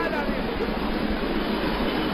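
Steady hiss of background room and recording noise picked up by a lecture microphone, with no words over it.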